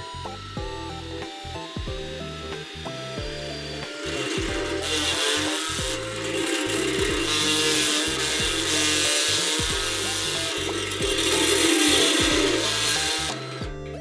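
Handheld rotary power tool grinding metal on a motorcycle frame. It starts about four seconds in, gets louder, runs steadily and stops shortly before the end. Background music with steady bass notes plays throughout.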